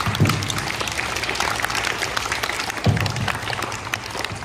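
A large group of young schoolchildren clapping in applause after a speech, with two dull thumps standing out, one just after the start and one at about three seconds.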